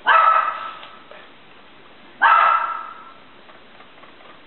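A dog barking twice, about two seconds apart, each bark fading away over most of a second.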